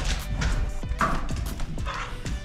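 A dog's claws clicking and scrabbling on a hardwood floor as it runs, in quick, irregular taps, over background music.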